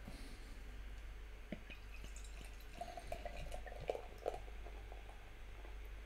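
Dark beer poured from a bottle into a stemmed glass, faintly, with a few small splashes and drips as the glass fills and foams.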